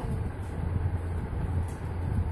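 A steady low hum over a rumbling background noise, with no clear speech.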